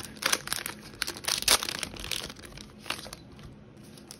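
Plastic trading-card pack wrapper crinkling and crackling as hands work it, in irregular bursts with the loudest crinkle about a second and a half in, dying down near the end.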